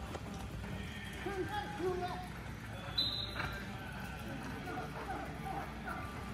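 Several horses loping on the soft dirt floor of an indoor arena, their hoofbeats under distant voices calling across the arena.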